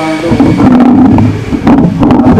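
An elderly man talking close into a handheld microphone, his voice loud and a little boomy, with low rumbling thumps on the microphone under it.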